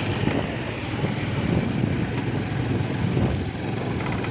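Motorcycle engine running steadily while riding along a rough dirt road, mixed with road and wind noise.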